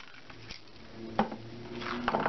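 Small clicks and knocks of craft wire being handled against a metal candle tin, with one sharper click a little over a second in.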